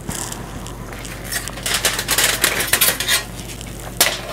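Aluminium foil crinkling and crackling as it is peeled off a cast-iron skillet, busiest for about two seconds from a little after the first second.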